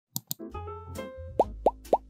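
Animated logo intro sound effects: two quick clicks, then a short held musical chord over a low bass, followed by three rising 'bloop' pops in quick succession in the second half.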